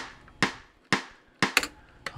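Metronome click track played through the Groove Agent drum sampler: sharp clicks about two a second, each with a short decaying tail, one doubled near the end.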